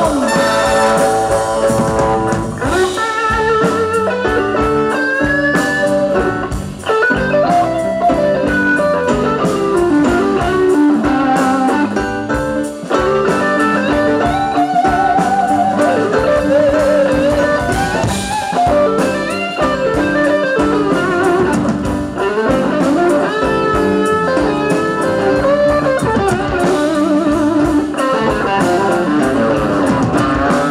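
A live blues band with an electric guitar playing a solo line of bent notes with vibrato over bass and drums.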